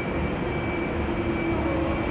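Steady traffic noise from elevated highway viaducts: a constant rumble with an engine hum in it that grows stronger about half a second in.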